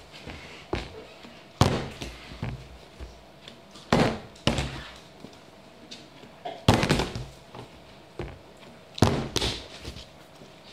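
A 2-litre plastic bottle partly filled with liquid being flipped and landing on a wooden table: a loud thud about every two to three seconds, four times, twice followed by a second knock about half a second later.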